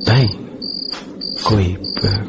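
Crickets chirping: a short high-pitched chirp repeating steadily, a little under twice a second, as night-time ambience.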